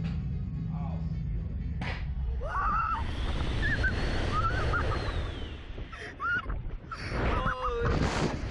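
Wind suddenly buffeting the ride camera's microphone as the SlingShot reverse-bungee capsule launches, a heavy rumble throughout. Over it, riders shriek and laugh in short high squeals from about two and a half seconds in, louder near the end.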